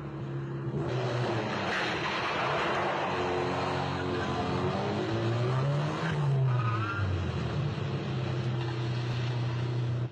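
Car engines running hard in a film car chase over tyre and road noise. One engine rises in pitch about five to six seconds in and falls back, and there is a short tyre squeal just after.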